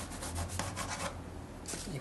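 A metal tactical pen's ballpoint scratching across cardboard as it writes letters, in a few short strokes, mostly in the first half.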